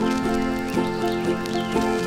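Concertina playing a blues tune in held, reedy chords that change about every half second.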